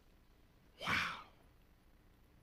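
A man's single short breathy sigh, about a second in, lasting about half a second.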